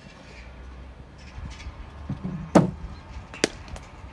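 A cricket bat striking the ball in a drive, one sharp woody crack about two and a half seconds in. A fainter, sharper click follows under a second later.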